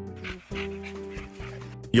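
A cartoon dog sound effect over steady background music.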